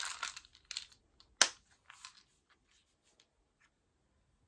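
Plastic weekly pill organizer being handled: rustling at first, then one sharp plastic click about a second and a half in, followed by a few faint ticks.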